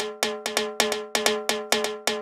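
Dry, unprocessed percussion lead sample looping in FL Studio: short pitched hits in a quick, uneven rhythm of about five a second, each ringing on the same few tones.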